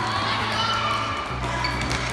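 Futsal balls being kicked and bouncing on a hard indoor court floor as children dribble, with children's voices and background music with a steady bass that changes note a little past the middle.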